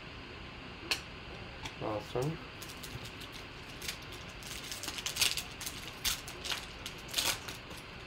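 Foil wrapper of a trading-card pack crinkling and tearing as it is pulled open by hand, a string of sharp crackles starting about two and a half seconds in.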